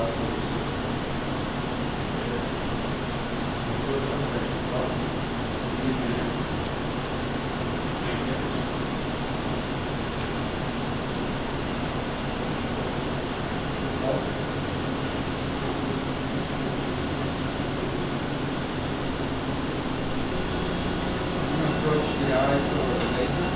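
Steady hum and hiss of running medical equipment in a laser eye-surgery room, even and unchanging, with a faint steady high-pitched whine on top.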